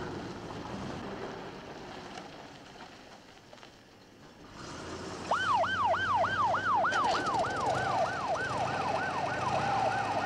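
Ambulance van's engine running and fading away over the first few seconds. About five seconds in, its siren starts in a fast yelp, the pitch rising and falling three to four times a second.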